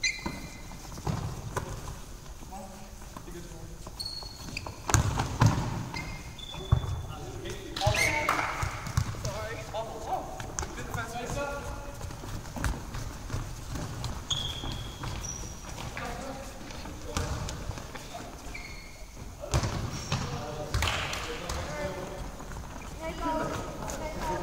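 Handball game play on a wooden sports-hall floor: a ball bouncing and being caught, with running footsteps and short, high squeaks of trainers. A few sharp impacts stand out, the loudest about five to seven seconds in.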